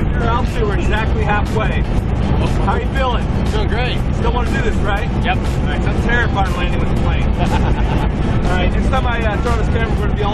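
Steady, loud engine drone inside the cabin of a small skydiving jump plane in flight. Several voices talk over it the whole time, but the words are lost in the noise.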